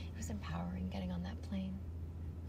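A woman speaking, over a steady low hum.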